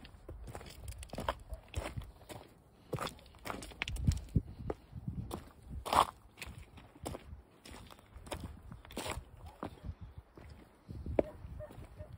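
Footsteps of a walker going down a rough path of stone slabs and loose gravel, each step a short scuff or crunch, at an uneven pace.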